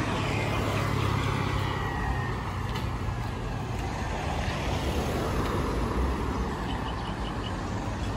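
Steady road traffic noise from passing cars, with a low engine hum loudest for the first few seconds.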